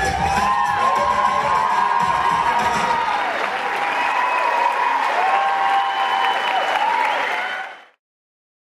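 Theatre audience applauding and cheering, with shouted whoops gliding up and down over the clapping; it fades out near the end.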